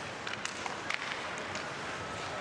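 Ice hockey game sound at moderate level: a steady rink-and-crowd hiss with several sharp clicks of sticks and puck in the first second and a half.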